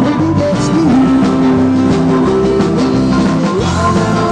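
A live rock and roll band playing: electric guitars and drums, steady and loud.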